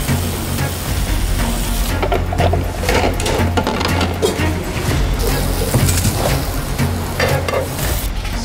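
Food sizzling as it fries in a pan, with short clicks and scrapes of metal utensils, over a background music bed.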